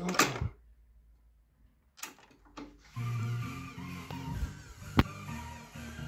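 Cassette deck transport keys clicking as they are pressed, then music playing back from a tape in the Kenwood KX-550HX cassette deck, starting about three seconds in, with a sharp click about five seconds in.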